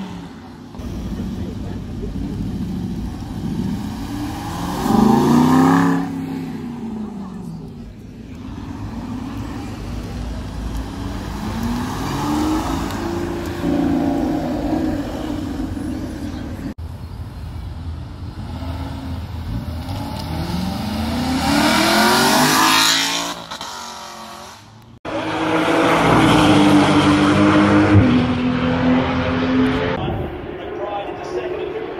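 A run of short clips of sports car engines revving and accelerating away, the engine note rising and falling in pitch several times, with abrupt cuts between clips. In the last few seconds a louder, steadier engine note holds.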